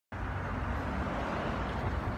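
Steady outdoor background noise: a low rumble with a soft hiss over it, with no distinct event.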